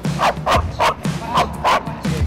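A dog barking five times in quick succession, over background music with a steady beat.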